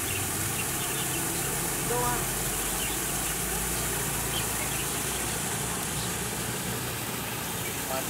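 Steady outdoor background of a low machine-like hum under an even hiss, with a brief distant voice about two seconds in.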